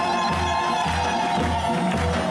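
Live Dezfuli and Shushtari wedding folk music: a drum beats about twice a second under a high, held, slightly wavering note.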